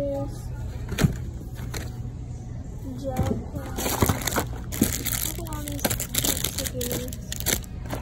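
Plastic-wrapped stationery packets clicking and crinkling as they are picked through by hand, with faint voices in the background.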